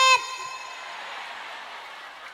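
A boy's voice through a PA system ends a held note of Arabic recitation just after the start. Then comes a steady low hiss of crowd and background noise.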